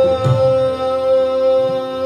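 Hindustani classical vocal music: a male voice holds one long, steady note over the tanpura drone and harmonium, with tabla strokes underneath and a couple of sharp plucks near the start.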